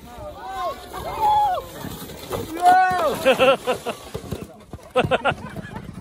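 Children's voices calling out and squealing, with rapid laughter about halfway through and again near the end.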